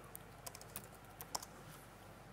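Faint, irregular keystrokes on a laptop keyboard, about half a dozen taps, the loudest a little past the middle.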